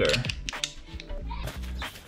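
Background music, with a brief clatter of wooden colored pencils knocking together as a handful is scooped up, near the start.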